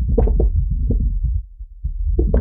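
Candle-flame recording turned by heavy plugin processing into a dense bass sound effect: a steady deep low rumble under irregular crackling flares. It dips briefly about one and a half seconds in.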